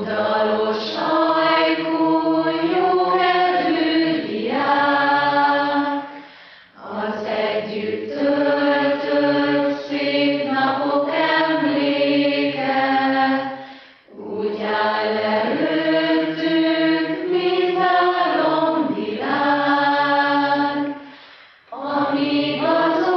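A choir singing slow, sustained phrases, pausing briefly for breath about every seven seconds.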